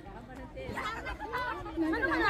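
Only speech: people chatting, with no other sound standing out.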